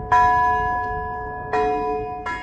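A bell struck twice, about a second and a half apart; each stroke starts suddenly and rings on with a clear tone, slowly fading.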